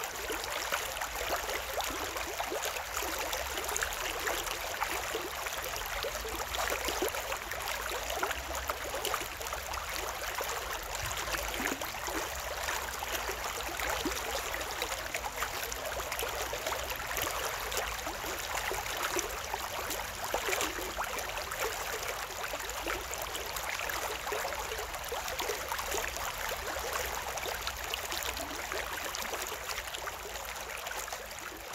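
Shallow stream water steadily running and trickling over and between concrete stepping stones, a continuous babbling rush with many small splashy crackles.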